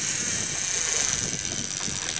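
Gold multiplier fishing reel's drag screaming in one steady high-pitched run as a halibut pulls line off it.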